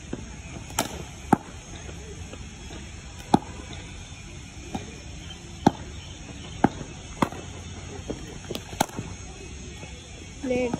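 Sharp, separate knocks of a hard cricket ball off the bat and the practice pitch during net practice, about eight of them spaced irregularly, the loudest a little over a second, three seconds and five and a half seconds in.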